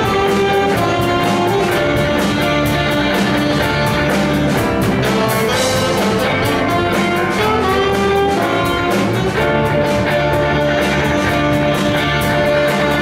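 A live band plays a jazz piece: saxophones carry held melody notes over electric guitars, electric bass, keyboard and a drum kit keeping a steady beat on the cymbals.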